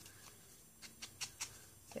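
Faint dabbing of an ink sponge against the edge of a small cardstock oval, a few soft ticks from about a second in.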